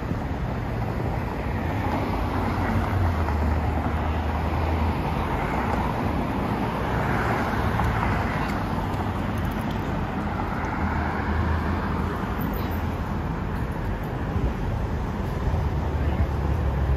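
Street traffic: cars driving past on a busy city road, with tyre and engine noise swelling as each vehicle goes by over a steady low rumble.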